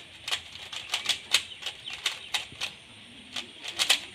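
Plastic 3x3 Rubik's-type puzzle cube being turned quickly by hand during a solve: quick, irregular clicks of the layers turning, about three a second, with a short pause near three seconds in.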